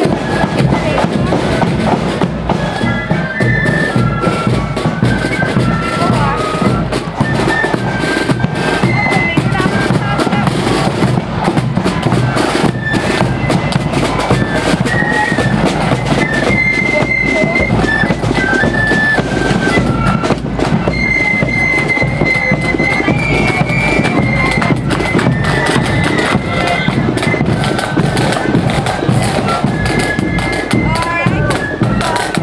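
Marching flute band playing a tune: flutes carry a high, stepping melody over steady drumbeats.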